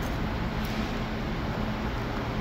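Steady background noise: a low, even hum with a faint steady tone and no distinct knocks or clicks.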